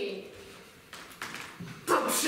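A woman's voice trails off at the end of a line, then a few short, sharp breaths are heard before she speaks again just before the end.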